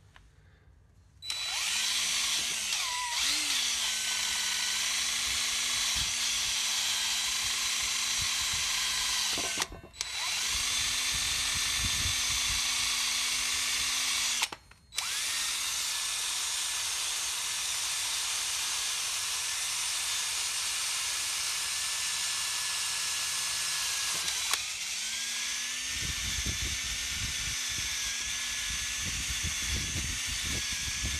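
DeWalt 20V MAX cordless drill spinning a wire wheel brush against a rusty steel stabilizer bar, stripping off rust, old paint and heavy deposits. The motor runs with a steady whine that starts about a second in, stops briefly twice, and dips in pitch near the end, where a rougher low rumble joins it.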